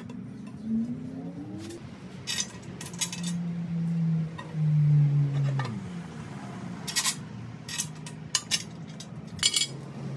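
Scattered light metallic clinks and taps, a few at a time, as the chrome centre of a three-piece wheel and its assembly bolts are handled and seated against the wheel's barrel. A low hum runs underneath, loudest in the middle.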